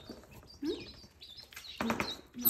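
Newly hatched ducklings peeping, a busy chorus of short high peeps. A short low rising sound comes about a third of the way in, and a low voice-like sound starts near the end.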